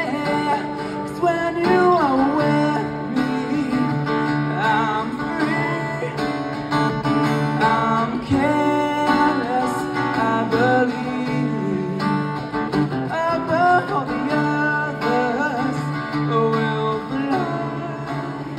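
Live solo song: a steel-string acoustic guitar played with a man singing over it, with sliding, drawn-out vocal notes, amplified through a small stage PA.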